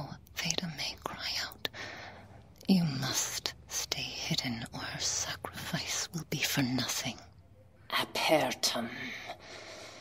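A woman's voice whispering and murmuring a chant-like incantation in phrases the recogniser did not catch, with a short pause about seven seconds in.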